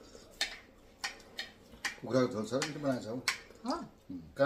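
Cutlery clinking against plates a few times, then a person's voice from about halfway through.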